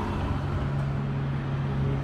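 Steady low mechanical hum of running machinery, with even street noise behind it.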